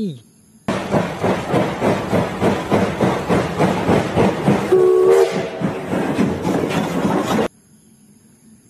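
Steam locomotive working, with rhythmic exhaust chuffs and hissing steam, and a short whistle blast about five seconds in. The sound starts and cuts off suddenly.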